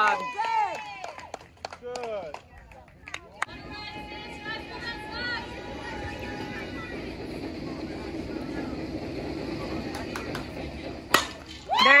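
Spectators' voices and chatter, then near the end one sharp crack of a softball bat hitting the ball.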